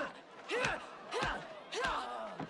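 Movie fight soundtrack: short grunts and shouts from the fighters, about one every half second, some with dull thuds of blows.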